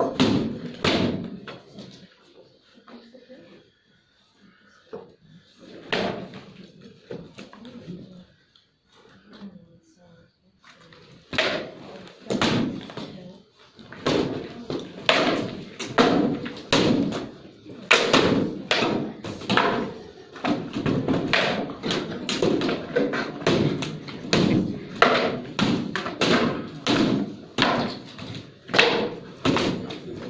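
Rattan sword blows landing on shields and armour in a heavy-armour combat bout: a few strikes at first, then from about a third of the way in a rapid, steady flurry of hard knocks, several a second.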